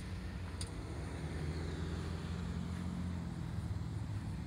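Steady low rumble and hum of vehicle traffic, with two faint clicks near the start.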